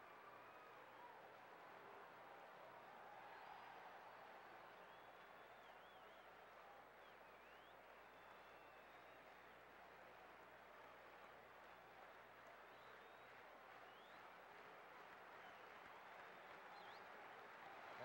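Near silence: faint, steady ballpark crowd murmur from the stands, with a low hum underneath.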